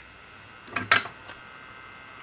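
The small fan of a homemade solder fume extractor comes on about a second in and then runs with a steady whine of several thin tones. Just before it starts there is a short knock.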